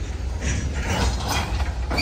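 Freight cars of a long manifest train rolling past: a steady low rumble with a cluster of irregular metallic clanks and squeaks in the middle.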